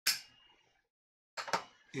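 A man's breathy exhale as he blows out pipe smoke, starting suddenly and trailing off over about half a second. A second short breath or mouth noise comes about a second and a half in.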